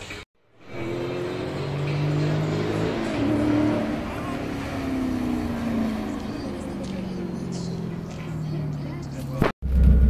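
A car's engine running hard down a drag strip, heard from trackside; its note climbs, then falls slowly as the car runs away down the strip.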